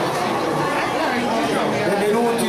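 Crowd chatter: many people talking at once, a steady murmur of overlapping voices.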